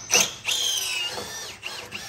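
Cordless power drill running under a truck's frame: a brief blip, then a longer run of about half a second whose motor whine rises and falls in pitch.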